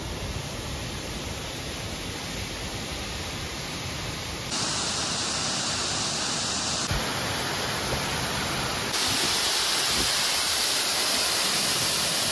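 Waterfall rushing as a steady noise, with no pitch to it. It jumps abruptly louder and brighter twice, about four and a half seconds in and again near the end.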